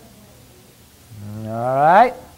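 A man's voice making one long rising 'oooh', starting low about a second in, climbing in pitch and growing louder, then cutting off abruptly.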